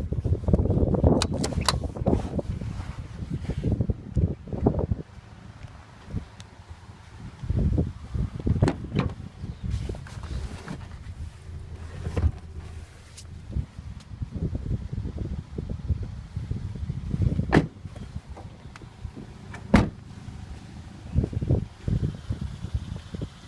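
Rear seat backs of a 2010 Toyota Yaris hatchback being folded and moved by hand, with rumbling handling noise at first and then scattered sharp clicks and knocks from the seat latches and panels.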